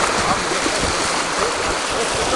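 Shallow river rapids rushing around an inflatable raft: a loud, steady rush of whitewater.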